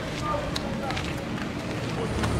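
Footsteps on a street with faint voices in the background, over steady outdoor ambience.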